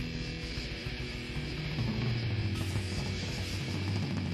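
D-beat hardcore punk song: distorted electric guitar and bass playing over fast drums.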